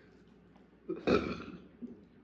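A person burps once, about a second in: a short, throaty, pitched burp lasting about half a second.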